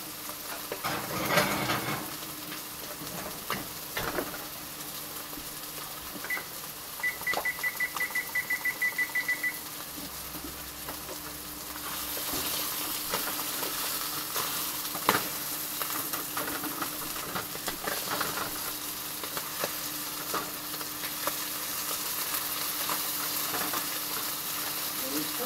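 Kitchen background of steady hum and hiss with occasional knocks and clinks. About six seconds in, an appliance gives one short electronic beep, then a quick run of about a dozen beeps lasting two to three seconds. The hiss grows brighter about halfway through.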